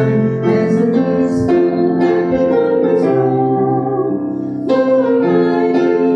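Congregation singing a song together to piano accompaniment, the voices holding long notes.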